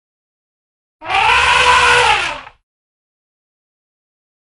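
An elephant trumpets once, about a second in: a loud call of about a second and a half that rises and then falls in pitch, over a low rumble.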